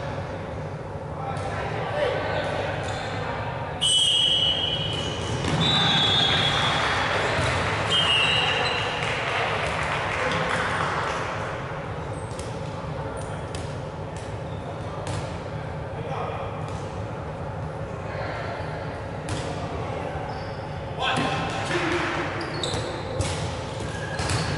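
Players shouting in an echoing sports hall, loudest from about four seconds in, followed by dodgeballs repeatedly thudding and bouncing on the wooden court floor.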